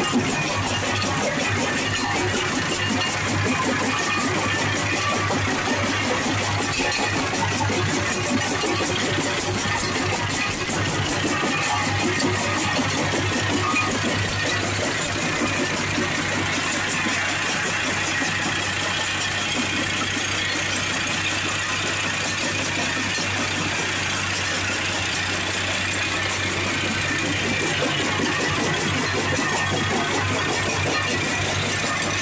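A 6 by 30 inch jaw crusher fed by a vibrating hopper, running steadily as it crushes granite and quartz countertop pieces, with a constant low hum under the din of the stone being broken.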